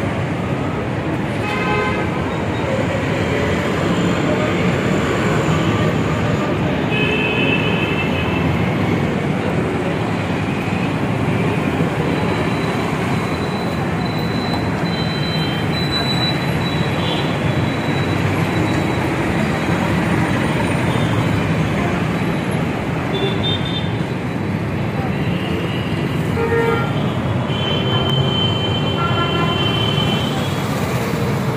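Busy city road traffic: a steady noise of passing vehicles, with short vehicle horn toots several times and a longer horn blast near the end.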